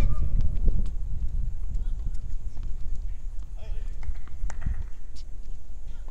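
Low rumble of wind on an outdoor microphone, with a few faint sharp knocks of tennis balls being hit or bounced on the courts, and brief faint distant voices.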